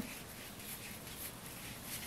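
Faint rustling and rubbing of cotton twine being worked with a crochet hook by hand.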